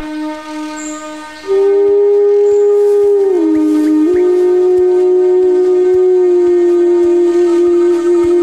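Background score: a solo wind instrument holds long notes over a soft low drone. About a second and a half in, it comes in loud on a sustained note, dips in pitch, then settles on one steady held note.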